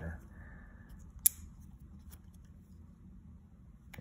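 Olamic Cutlery WhipperSnapper folding knife's blade snapping shut with one sharp metallic click about a second in, followed by a couple of much fainter clicks as it is handled.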